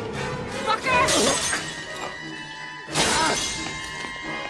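Glass beer bottles smashing, twice: once about a second in and again near the three-second mark, over tense orchestral film score.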